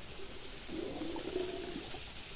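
Faint sloshing of water in a flooded rice paddy, a little louder for about a second in the middle.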